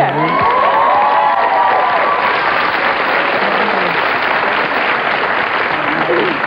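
Studio audience applauding and cheering, with several high whoops from the crowd in the first couple of seconds.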